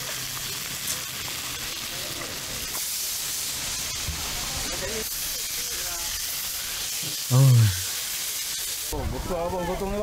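Whole fish frying in oil on a flat steel griddle, a steady sizzling hiss. A short loud vocal exclamation comes about seven and a half seconds in, and the sizzle drops in level near the end.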